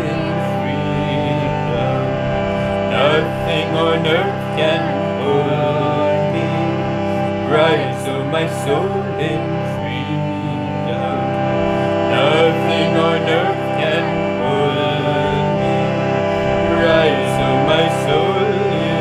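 Harmonium playing sustained chords under a man and a woman singing a devotional kirtan chant.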